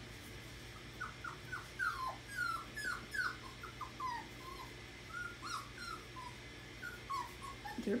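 Seven-week-old puppies whimpering and yipping as they play, a quick run of short, high cries that each slide downward in pitch, a few every second.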